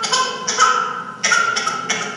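A one-year-old baby's distressed screeches: a few short, high-pitched squealing cries in quick succession, the infant's stress reaction to a mother holding a still, unresponsive face.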